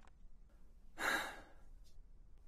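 A single heavy sigh, a breath pushed out through the mouth, about a second in and lasting about half a second.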